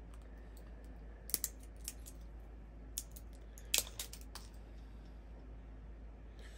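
Scattered sharp clicks and crackles of fingers picking and tearing at the plastic perforated seal on the neck of a hot sauce bottle, loudest a little over a second in and again just before four seconds.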